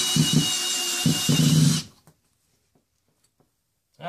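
Makita cordless drill driving a floor-repair screw through carpet and subfloor into a joist, running with a low pulsing under its whine. It stops abruptly about halfway through.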